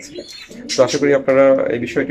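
Domestic pigeons cooing, with a drawn-out coo about halfway through, mixed with a man's voice.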